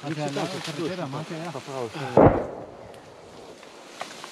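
Men's voices, then just over two seconds in a single loud, short weapon blast close by, with a brief rumble after it.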